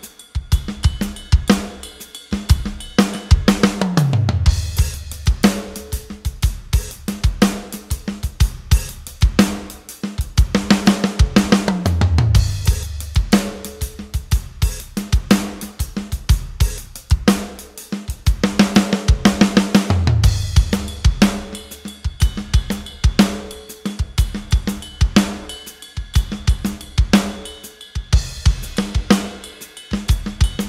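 Sampled acoustic rock drum kit from the Hertz Drums plugin playing a steady groove of kick, snare, hi-hat and cymbals, with a falling fill down the toms about every eight seconds. The kick drum's velocity range is being pushed up so that every kick note triggers only the hardest, loudest hit samples.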